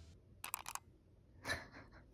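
Quiet room with a quick run of faint clicks about half a second in and one soft, short sound about a second later: handling noise from a phone held in the hand while lying in bed.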